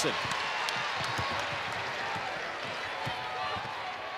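Basketball being dribbled on a hardwood court, a scatter of short thuds, over a steady arena crowd murmur.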